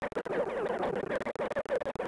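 Scratchy, crackling noise dense with rapid clicks.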